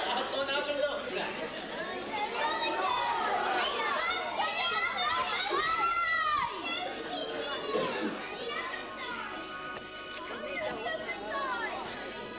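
Audience, mostly children, shouting back at the stage with many voices at once. A few steady musical tones come in near the end.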